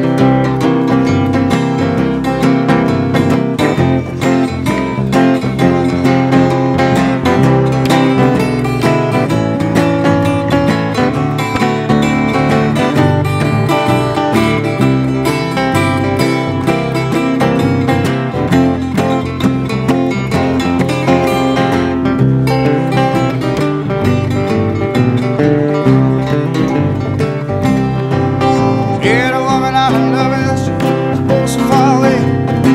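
Three acoustic guitars playing an instrumental break together, strummed and picked at a steady level.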